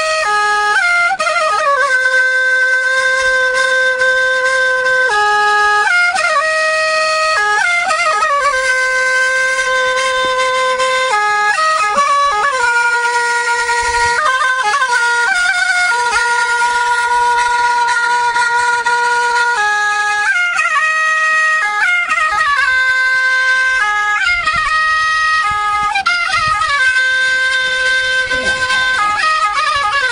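Solo woodwind music: a single wind instrument plays a slow melody of long held notes joined by quick ornamented runs.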